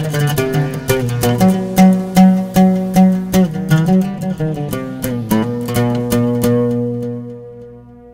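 Oud playing a taqsim improvisation: a quick run of plucked notes, then about five seconds in a last note is left to ring and fade away.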